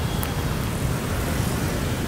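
Steady background road-traffic rumble with no single event standing out.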